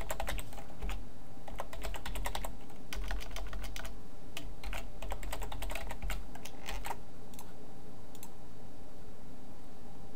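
Computer keyboard typing: a quick run of keystrokes for about seven seconds, then a few isolated clicks.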